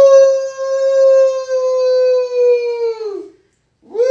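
A high voice holding a long, steady 'Oh' for about three seconds, sagging slightly in pitch as it fades, then a brief silence and a second long 'Oh' starting just before the end.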